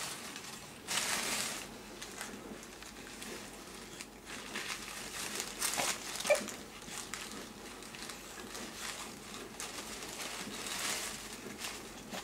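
Thin crumpled white paper rustling and crinkling in short bursts as a baby grips and moves it: about a second in, around six seconds, and again near the end.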